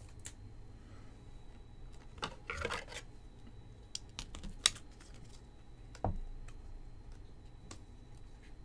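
A trading card being handled in a clear plastic sleeve: a crinkly rustle about two seconds in, a few sharp small clicks, and a soft thump about six seconds in.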